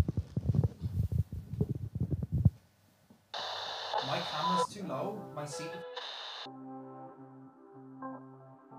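Muffled, low voice-like sound for the first two seconds or so, then after a short silence a channel ident sting starts suddenly: a bright whoosh with chiming notes that gives way to sustained synth chords.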